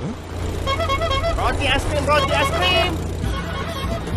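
A small motorcycle engine running steadily, with a person's voice over it through the middle.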